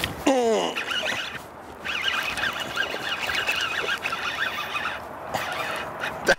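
A short falling cry, then a fishing reel buzzing in two stretches, a brief one and then one about three seconds long, as a hooked fish is fought on the line.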